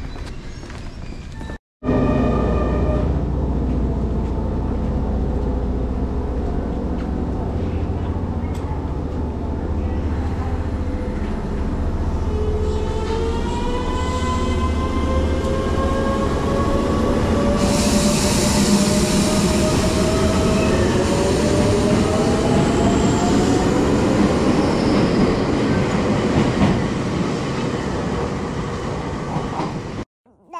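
Kobe Electric Railway electric train: a steady low rumble, then from about twelve seconds in the traction motors' whine rises steadily in pitch as the train pulls away and speeds up, with wheel and rail noise growing.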